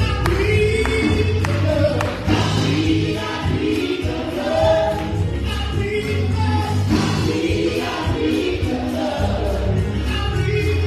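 A small gospel praise team singing together into microphones over an instrumental backing with a steady bass line.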